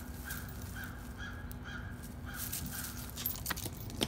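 A bird calling a run of short, evenly spaced calls, about two a second, over a steady low hum. Near the end the calls stop and a few clicks and jingles come in.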